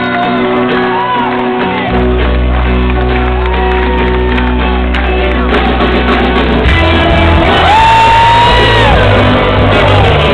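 Live rock band playing onstage with guitars and drums, heard from the audience: held notes at first, a deep bass coming in about two seconds in, and the full band growing louder near the end, with shouts over the music.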